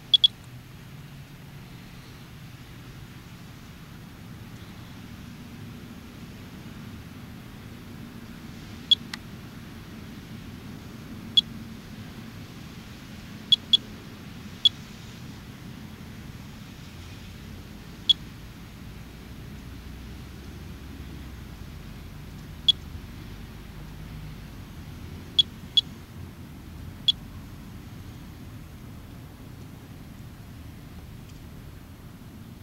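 Monitor 4 Geiger counter chirping once per detected count: about a dozen short, high beeps at random, uneven spacing, two of them close together at the very start. It is a low count rate, with the needle staying near the bottom of the scale, at background level.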